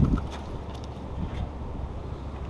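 Wind blowing across the microphone, a steady low rumble.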